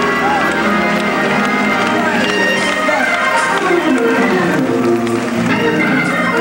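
Live gospel music: a female soloist singing and ad-libbing over held organ chords with a choir behind her.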